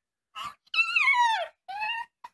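Chihuahua whining eagerly for a snack: a short yelp, then a long high whine that slides down in pitch, then a shorter rising whine near the end.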